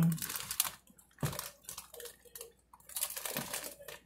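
Close-up crackling and clicking of someone biting and chewing a Dairy Queen chocolate Dilly Bar, the hard chocolate coating cracking, with one sharp crack about a second in.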